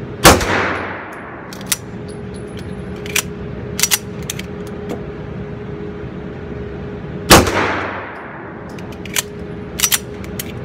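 Two shots from a Springfield Armory Range Officer 9mm 1911 pistol, about seven seconds apart, each ringing out in the range for about a second. The rounds are fired one at a time with the magazine out, as an extractor test. Lighter clicks and clinks fall between and after the shots, over a steady hum.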